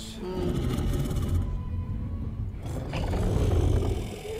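Low, rumbling growl and breathing of a huge dragon, a TV-drama sound effect, over a brooding music score.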